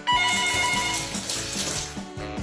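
Background music, with a sudden loud ringing electronic tone and a hiss coming in just after the start. The tone lasts about a second, and the hiss fades away near the end.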